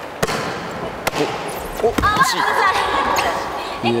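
A volleyball is slapped by hand on a sitting volleyball serve, followed by two more sharp hits or bounces about a second apart. Players' voices call out in between.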